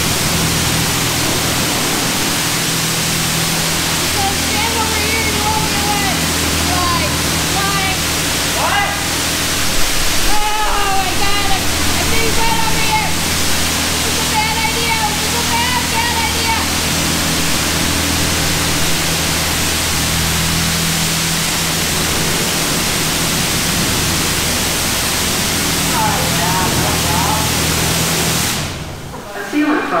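Touchless automatic car wash spraying water at high pressure over a side-by-side, a steady hissing rush with a steady low hum beneath it. The spray cuts off about a second before the end.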